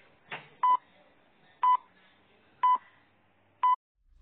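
Film-leader countdown beeps: four short, identical beeps about one second apart, over a faint hiss.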